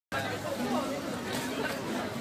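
Indistinct chatter of several people talking at once, a busy market crowd with no clear words.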